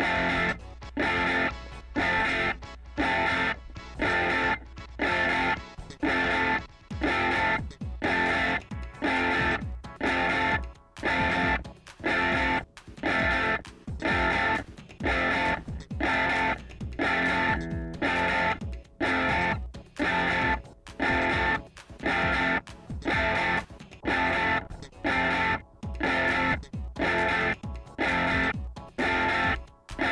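Recorded electric guitar track playing short, repeated phrases about once a second through an amp. The amp's hum in the gaps between phrases is being cut quieter as an expander/gate's threshold and ratio are raised.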